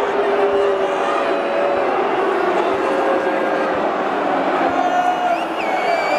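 Large football stadium crowd singing a chant, long held sung notes over a constant din of many voices.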